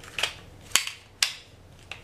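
A 3D-printed plastic prop revolver being handled: four short, sharp plastic clicks and knocks about half a second apart as its parts are worked by hand.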